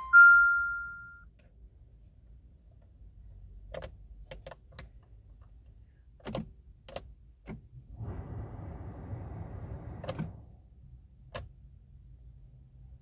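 Dashboard warning chime ringing and fading in the first second, then a run of light clicks from the push-button start being pressed, a short whirring noise of about two seconds, and two more clicks. No engine cranking is heard: the car fails to start.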